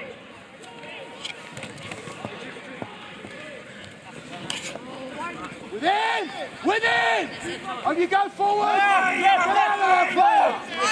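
People shouting during a rugby run and tackle. The first half is faint field noise. Then come two long, loud shouts about six and seven seconds in, and near the end several voices shout over one another.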